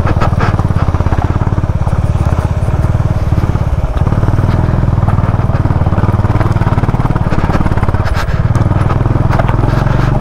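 Motorcycle engine running steadily at low speed on a rough, rocky dirt track. The engine's level dips briefly about four seconds in and again near eight seconds.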